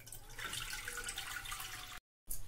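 Milk pouring in a steady stream from a plastic bottle into a wide non-stick pan, splashing into the milk already pooled there. The pour fills out about half a second in and cuts off suddenly at the end.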